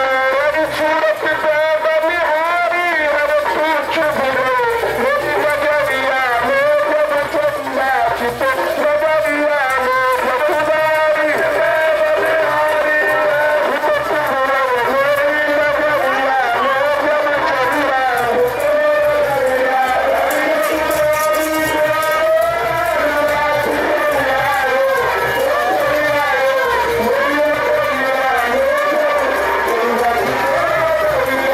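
Devotional singing with musical accompaniment: a sung melody that wavers and runs on without a break, loud and steady.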